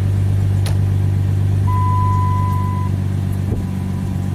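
Dodge Charger 2.7-litre V6 idling steadily while warming up, a new oil pressure sensor just fitted. A single click comes early on, and a thin steady high tone sounds for about a second in the middle.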